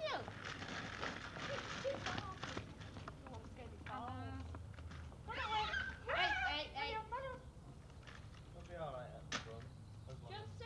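Indistinct voices, several short bursts of talking or calling that the words cannot be made out from, with a rustling, rattling noise in the first two or three seconds.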